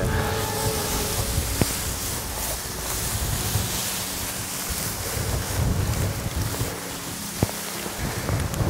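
Wind rushing over the microphone, with dry tall grass rustling as people creep through it. Two small clicks, one about a second and a half in and one near the end.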